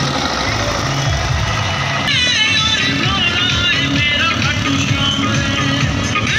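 Loud music with a repeating bass beat and a singing voice, played through a truck-mounted DJ speaker stack; the music changes abruptly about two seconds in.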